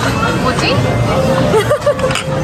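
Indistinct chatter of several voices, a steady murmur of talk with no clear words.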